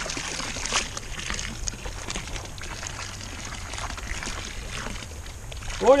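Water splashing and sloshing in a stone fountain trough as a cloth is dunked in it and lifted out dripping, with small irregular splashes throughout.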